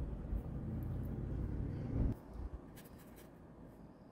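A low rumble of passing traffic for the first two seconds, ending abruptly, then the light scratching of a paintbrush on canvas.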